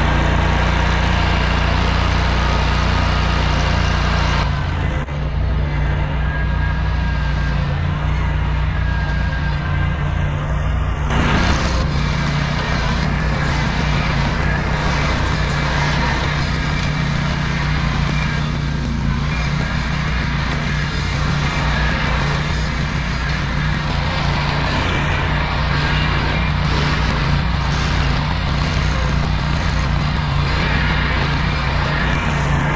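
Ventrac compact tractor running steadily under load while its Tough Cut rotary brush deck cuts tall overgrown grass: a steady low engine drone with the whir of the mower blades.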